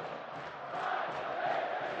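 Football stadium crowd chanting in the stands, a steady mass of many voices backing the home side.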